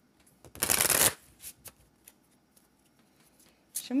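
A deck of cards shuffled in one quick, dense burst lasting about half a second, followed by a couple of faint card taps.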